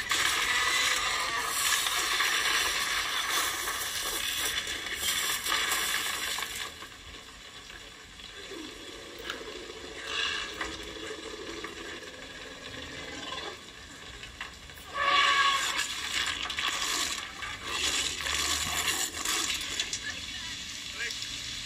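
A film soundtrack heard through laptop speakers: heavy rain with the crashing and splintering of a wooden hut as the T. rex smashes it. The crashing is loudest in the first six seconds and quieter after, with a sudden loud outburst about 15 seconds in.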